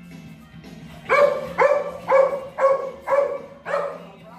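A small dog barking six times in a quick, even run, about two high-pitched barks a second.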